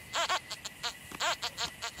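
XP ORX metal detector giving a string of short chirping target tones, each rising and falling in pitch, as its coil sweeps back and forth over a tiny piece of gold on highly mineralised ground.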